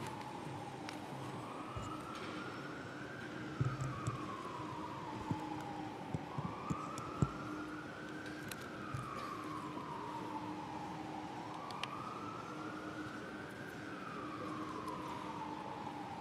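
Emergency vehicle siren in a slow wail, rising and falling about every five seconds, with a few soft knocks and thumps a few seconds in.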